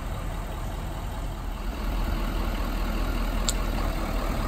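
Lenco BearCat armored truck's engine idling steadily, growing louder about two seconds in; a short sharp click comes near the end.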